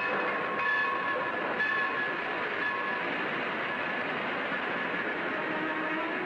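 Train running beside the listener: a steady rushing rumble with faint sustained high tones over it.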